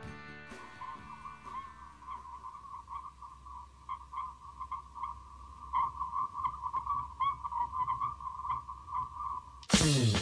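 A single electronic tone that wavers and flickers at one steady pitch, opening a music track; about 9.7 seconds in, a full band with drums comes in loudly.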